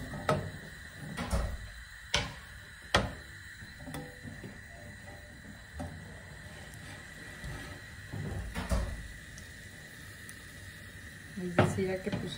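Diced raw potatoes and carrots scraped off a cutting board into a stainless steel saucepan: a few sharp knocks of board and pieces against the pan in the first three seconds, and another thump near the end.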